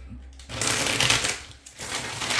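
A deck of tarot cards being shuffled by hand, in two bursts of rustling: the first about half a second in, the second near the end.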